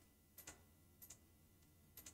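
Near silence with three faint, short clicks, each looking doubled: one about half a second in, one about a second in and one at the end.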